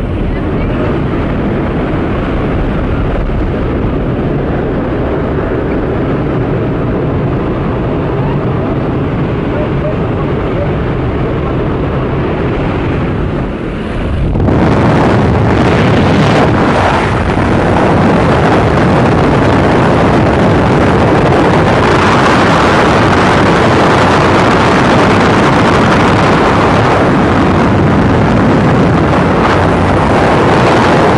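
Small propeller plane's engine droning steadily inside the cabin. About fourteen seconds in this gives way to a louder, hissier rush of wind and engine noise as the microphone moves out into the slipstream at the open door.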